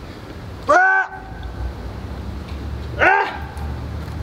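A man grunting with effort as he strains through the last push-ups of a long set: two short voiced grunts, about a second in and again about three seconds in, over a steady low rumble.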